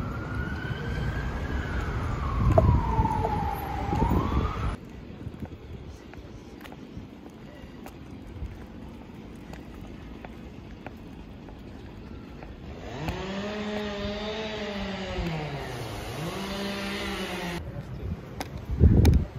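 A siren wailing in one slow rise and fall over street traffic. It cuts off after about four and a half seconds. Quieter street ambience follows, and near the end a lower pitched tone slides down and back up for about five seconds.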